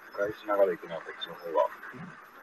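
Quiet, thin-sounding voices talking briefly, twice, over a steady hiss.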